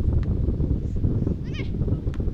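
Wind buffeting the microphone, with a brief high-pitched shout from the pitch about one and a half seconds in.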